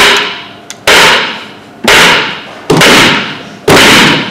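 Loud, slow rhythmic banging: one heavy strike about every second, four in all, each dying away over about half a second.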